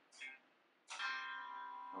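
A chord strummed once on a GTar electronic guitar, starting sharply about a second in and ringing out steadily.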